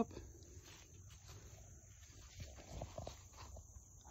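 Faint footsteps and rustling in dry leaf litter, a few slightly louder steps and crackles about two and a half to three and a half seconds in.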